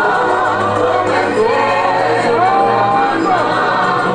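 A choir singing, many voices together, with a long held note in the middle.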